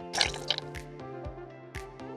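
Background music with a steady beat, over a few short, wet squishing sounds in the first second as stuffed green chili peppers are pushed into a small piece of raw steak.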